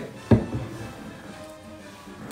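A single sharp knock about a third of a second in, as the bar trolley and its bottles are knocked while reaching down for a bottle, over faint background music.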